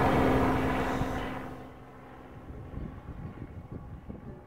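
A final strummed ukulele chord ringing out and fading away over the first second and a half, ending the song. After it, a faint low rumble.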